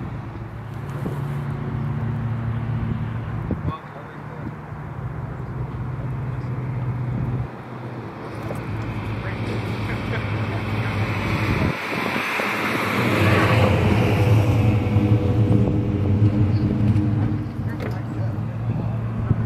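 Car engine idling with a steady low hum, broken by abrupt jumps in sound where clips are cut together, and louder, busier engine sound in the second half.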